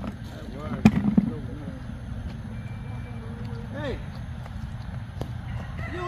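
Faint voices with steady outdoor background noise. There is one sharp knock about a second in and a fainter click near the end.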